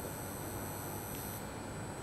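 A pause in speech. Room tone carries a few faint steady high-pitched tones, and the highest one cuts off about two-thirds of the way through.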